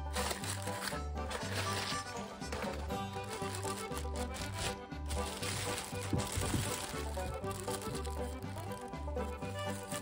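Background music with a steady, pulsing bass beat throughout. Beneath it, a clear plastic bag and bubble wrap crinkle as they are handled and pulled off a figure.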